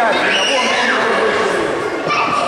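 Many voices chattering in an echoing sports hall, with one high-pitched cry that falls in pitch over about a second.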